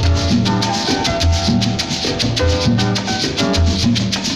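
Guaracha salsa record played over a sound system: a piano montuno of repeated chords over a bouncing bass line, with maracas and hand percussion keeping a quick, steady beat.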